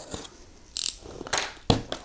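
Packing tape being cut and pulled free along a cardboard box's seam: a short high hiss a little before the middle, then a quick run of sharp crackling rips in the second half.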